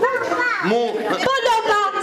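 Several young children's voices calling out and chattering together.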